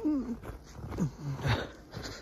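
A few short vocal sounds, each falling in pitch, with a brief noisy burst about one and a half seconds in.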